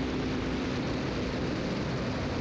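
Steady drone and rush of a single-engine Beechcraft Bonanza's piston engine and propeller at takeoff power, heard from inside the cabin during the takeoff roll.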